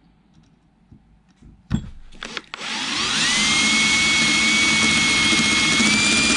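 Cordless drill boring a hole through a metal rod clamped in a vise, cutting with a sharp bit. A couple of light knocks come first; about two and a half seconds in, the drill starts, its whine rising quickly and then holding steady.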